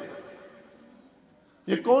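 A man's lecturing voice trailing off with a short echo into a pause of quiet room tone, then speech resumes near the end.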